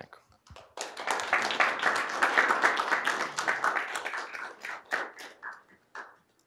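Small audience applauding, starting about a second in and dying away near the end, after a talk has ended.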